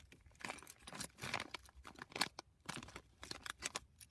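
A shiny plastic-foil Lego minifigure blind bag being torn open and crinkled by hand, with irregular crackles throughout.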